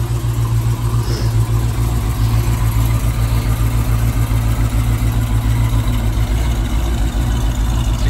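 1969 Chevrolet Camaro's 350 small-block V8 idling steadily through its exhaust.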